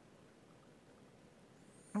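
Near silence: faint, steady background hiss, with a voice starting right at the end.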